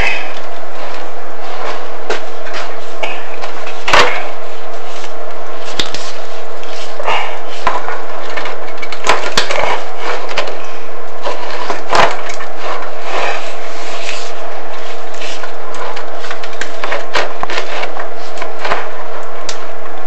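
Chimney inspection camera and its cable being lowered down a heating flue, rubbing and scraping against the flue walls in irregular scrapes with occasional sharp knocks, over a steady hum.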